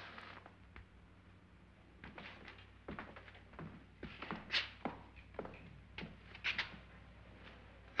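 Faint, irregular footsteps on a hard floor: a scattering of light taps, a few louder ones around the middle and near the end, over a low steady hum.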